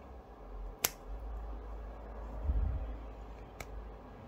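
Small scissors snipping the jump threads of a machine embroidery: two sharp snips, one about a second in and one near the end, over a low rumble that is loudest around the middle.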